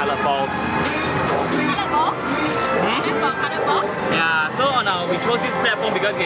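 Arcade din: game-machine music and jingles playing steadily, with voices in the background.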